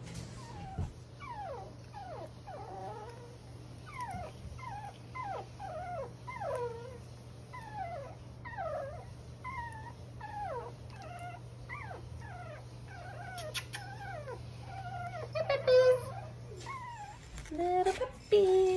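Three-week-old Poochon puppies whimpering and squeaking in a long string of short calls, each falling in pitch, about two a second, with a louder burst near the end.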